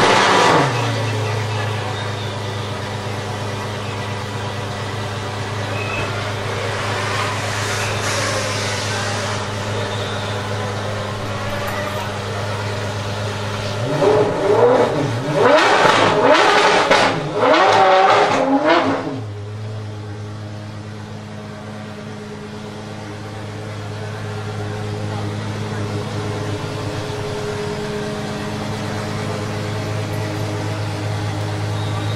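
De Tomaso P72 supercar engine starting with a flare of revs, then settling into a steady idle. About 14 seconds in it is revved in a run of sharp blips for about five seconds, then drops back to idle.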